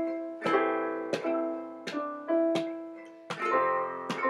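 Handmade cherry resonator ukulele with a metal cone, strummed in a steady rhythm, its chords ringing and fading between strokes, with a keyboard and a hand drum playing along.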